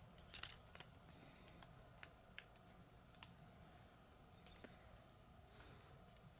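Near silence, with a handful of faint, short clicks scattered through it.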